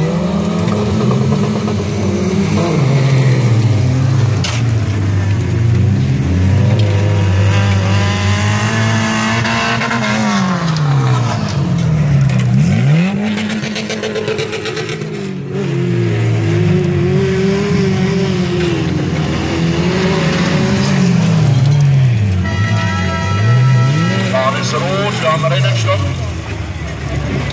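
Several stock car engines racing on a dirt track, revving hard, their pitch repeatedly climbing and dropping. Twice, about halfway and near the end, the pitch swoops sharply down and back up.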